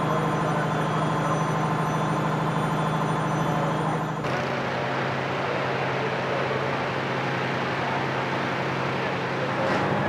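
Steady drone of a running engine with a low hum, changing abruptly about four seconds in.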